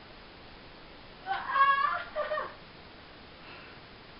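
A high-pitched vocal cry lasting under a second, starting a little over a second in, followed by a shorter one.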